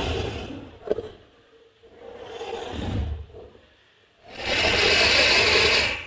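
Horror-film sound design: surges of harsh scraping noise that swell and fade three times, with a sharp crack about a second in. The last surge, starting about four seconds in, is the loudest and dies away right at the end.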